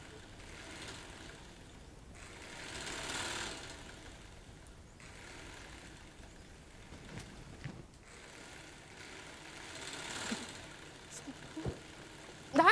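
Sewing machine running faintly in several stretches of a few seconds each, with short pauses between them.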